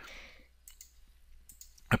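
A few faint computer mouse clicks, spread over the middle of a low-level pause.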